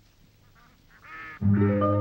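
A few duck quacks, then film-score music starts abruptly and loudly about one and a half seconds in, with low held notes.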